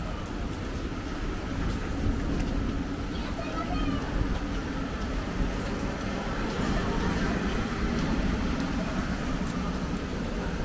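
Busy wet city street ambience: a steady wash of traffic and road noise, with faint voices in the background.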